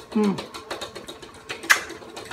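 A person chewing food with an appreciative 'mm', followed by a run of small, quick mouth clicks and one sharp click near the end.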